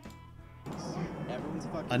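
Mostly speech: a short lull, then quieter talking from a street video being played back.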